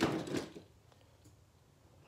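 A brief clatter of handling as a small toy monster truck is put down and the next one picked up, in the first half second; then quiet room tone.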